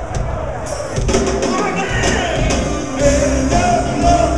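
Live rock band playing on a stage sound system, with drums prominent and continuous, heard from within the audience.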